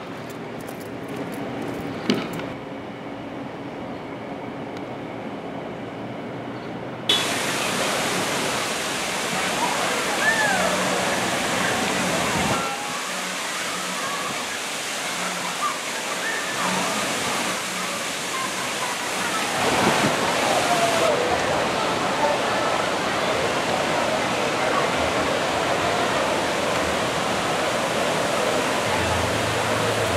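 Quiet ambience with a single knock about two seconds in. About seven seconds in it switches to water park sound: steady rushing, splashing water with children's voices and shouts over it.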